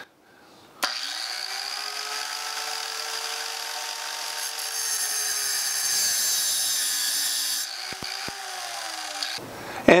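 Small abrasive cutoff saw starting up about a second in and running steadily. Around the middle, a gritty hiss rises as the wheel grinds a slot into the end of a metal tube, and the motor's pitch sags under the load. The saw cuts off shortly before the end.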